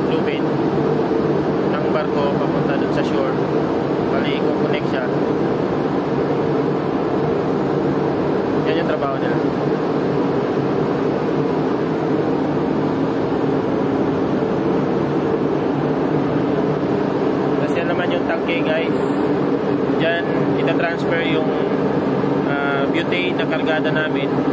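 Steady machinery hum of a ship, heard from the deck of an LPG carrier, with several low tones that hold without change; a man's voice talks over it in short stretches.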